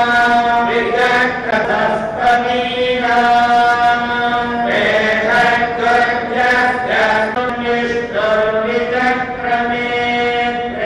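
Hindu temple priests chanting mantras together in long, held tones, pausing for breath every second or two, during the ritual bathing of deity idols.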